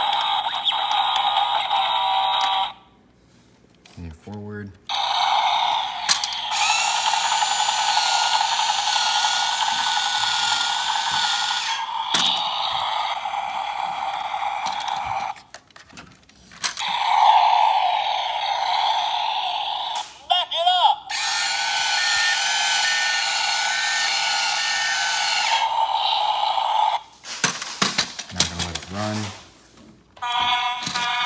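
A Toy State CAT Machines toy bulldozer's small built-in speaker playing its tinny electronic sounds and song, in several stretches of a few seconds each with short pauses between. A few knocks come from handling the toy about four seconds in and near the end.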